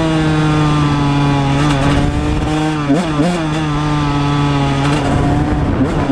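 1999 Honda CR125R's 125 cc single-cylinder two-stroke engine running at speed on steady throttle, its pitch slowly easing down. The note wavers briefly about three seconds in and again near the end.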